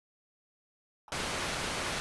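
Dead silence for about a second, then a steady hiss of TV static cuts in abruptly and holds.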